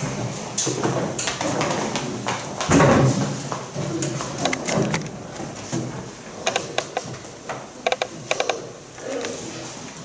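A room full of people moving about: scattered knocks and clicks, with a cluster of sharper knocks past the middle, over faint rustling and low voices.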